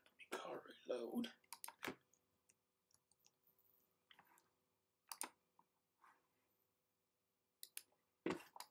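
A few sharp, isolated computer mouse clicks, spaced a few seconds apart, in a quiet room. A brief murmured voice comes near the start.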